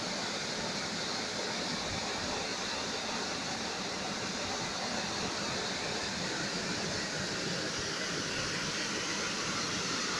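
Waterfall rushing steadily: an even, unbroken noise of water falling onto rocks and into the pool below.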